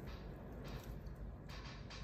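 Faint soft rustling of hands rolling and kneading a small lump of white clay, over a low steady hum.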